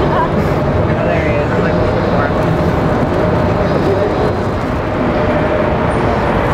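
Steady outdoor street noise: a continuous rumble of traffic with a constant hum held throughout, and faint voices in the background.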